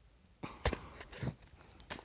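Hard plastic handling of a toy pump-action foam-ball popper gun as a soft foam ball is pressed into it: one sharp click about two-thirds of a second in, then a few softer knocks.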